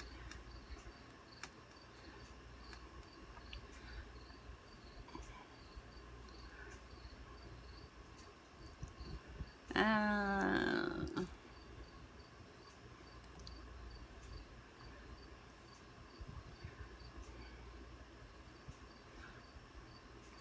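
A short laugh about halfway through, over faint rustling of hands working in hair. A faint high-pitched chirp repeats about twice a second throughout.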